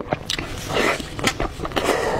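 Close-miked eating: biting into and chewing a piece of glossy braised pork belly, with irregular short clicks and wet mouth noises.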